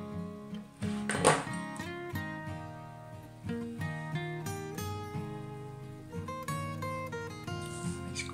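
Background music: a guitar plucking a slow melody, with a short knock about a second in.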